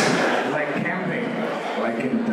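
Indistinct talking with a man's voice among it, in a large, echoing hall.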